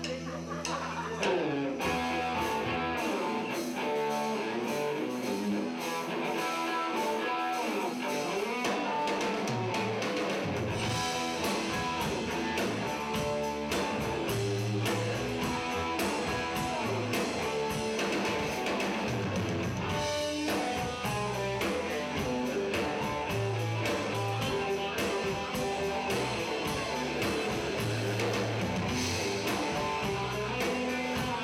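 A live rock trio playing: electric guitar, bass guitar and drum kit. The drums come in about a second and a half in and keep a steady beat under a low bass line.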